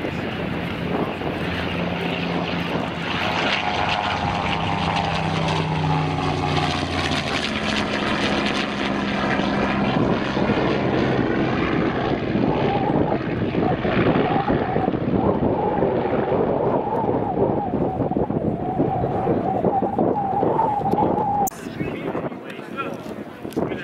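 Bell P-63 Kingcobra fighter's Allison V-12 engine running at takeoff power as the plane lifts off and climbs away, a loud, steady propeller-plane drone.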